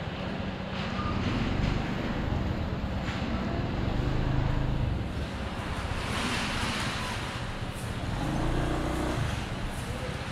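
Honda ADV 150 scooter's single-cylinder engine running on the move amid road traffic, its pitch stepping up and down with the throttle. A rush of noise swells about six to seven seconds in.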